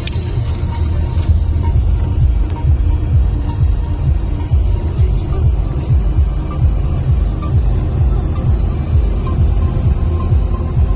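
Music with heavy, pulsing bass over the low rumble of a car driving on the road.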